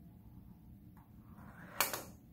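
Small toy car rolling briefly down a ramp, then striking a wooden block with a single sharp knock near the end.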